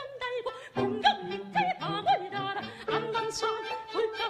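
A soprano singing a Korean folk-style song in classical style, in a quick, ornamented line with vibrato, over bowed string accompaniment.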